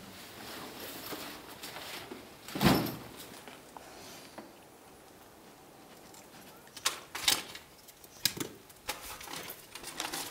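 Scattered handling noises of people working with gear and props against rock: one louder thump about three seconds in, then several sharp clicks and knocks near the end.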